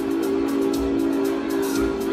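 Recorded dance music playing: a long held chord over a steady beat about once a second, with quick ticking percussion on top.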